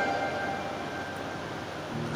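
A pause between sung lines: the boy's last note dies away in the first moment, leaving a steady hiss of background noise.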